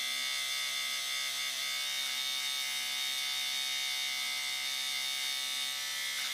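Electric beard trimmer running with a steady buzz at a constant pitch, its blades held against the upper lip to trim the moustache line.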